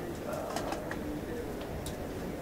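A man's low, drawn-out hesitation sound, a murmured "uh" held between words, with a few faint clicks.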